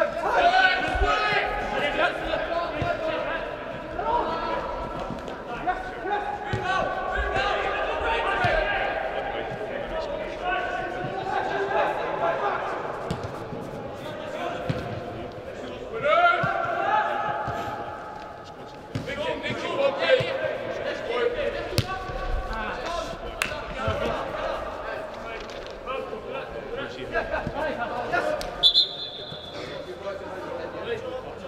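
Players shouting and calling to each other, echoing in a large indoor sports hall, with the sharp thud of a soccer ball being kicked now and then. A short, steady high whistle blast near the end.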